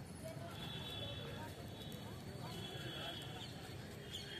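Faint chatter of a crowd of people milling about, voices overlapping with no one voice standing out.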